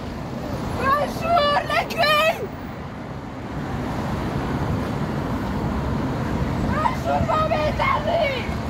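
Steady noise of car traffic on a busy road, with a woman shouting slogans twice in high-pitched bursts, about a second in and again near the end.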